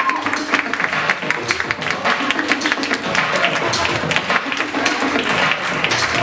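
Crowd clapping and applauding over music playing in a large hall, the many quick irregular claps running through the whole stretch.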